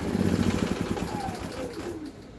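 Predator 3500 inverter generator's single-cylinder engine shutting down on its remote stop. Its running note breaks into slowing firing pulses and fades out over about two seconds.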